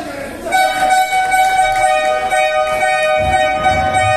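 Music with held, pitched chords that change every second or so over a steady beat, coming in about half a second in.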